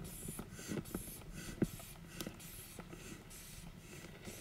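Blood pressure cuff being inflated with a rubber squeeze bulb, pumped about twice a second, each squeeze a short tick over a soft hiss of air.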